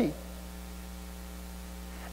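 Steady electrical mains hum with a faint buzz of evenly spaced tones from the sound system. A man's spoken word trails off at the very start.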